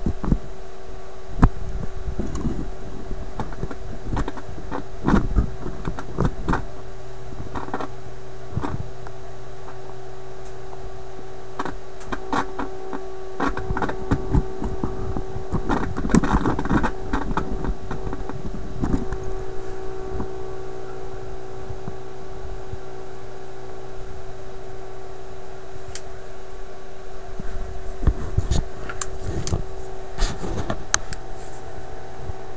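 Philips 922 vacuum tube radio running: a steady hum and a mid-pitched tone from the set, with scattered crackles and clicks that bunch up in the middle and near the end. The tone shifts slightly a little over halfway through.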